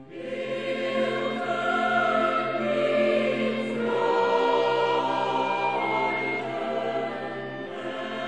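A choir singing a sacred anthem, coming in loudly at the start over sustained instrumental accompaniment.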